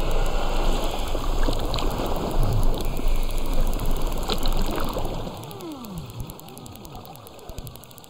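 Male narwhal's rapid-fire echolocation clicks picked up by an underwater hydrophone, a dense buzzing click train. About five seconds in it becomes much quieter, with faint sweeping sounds.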